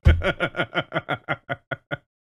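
A man laughing: a rapid run of about a dozen short "ha" pulses, loudest at the start and fading toward the end.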